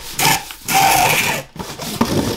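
Self-adhesive paper packing tape pulled off a handheld tape dispenser onto a double-wall cardboard box in two pulls, the second and longer one lasting about a second, then rubbed down by hand near the end.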